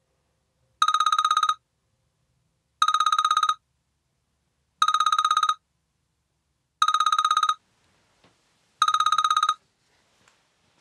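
A telephone ringing: five trilling rings, each under a second long, one every two seconds. A few faint soft ticks come near the end.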